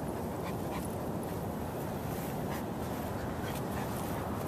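An Old English Sheepdog panting as it walks on a head-collar leash, over a steady low rumble of outdoor noise on the microphone.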